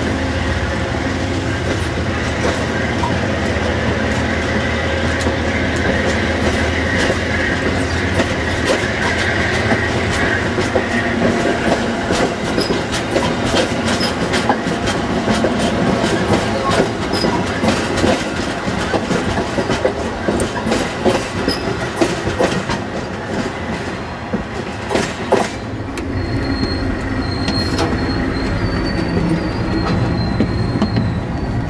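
Amtrak passenger cars rolling slowly past on steel wheels, with a steady low rumble and many sharp clicks and clanks from the wheels and trucks over the rail joints. A thin, high wheel squeal comes in near the end.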